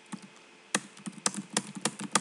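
Computer keyboard keys tapped in quick succession, starting about a third of the way in: repeated Ctrl+V presses pasting copies of a line of code.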